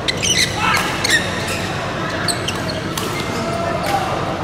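Badminton rally in a large hall: sharp racket hits on the shuttlecock, bunched in the first second or so with a few more later, and shoes squeaking on the court floor.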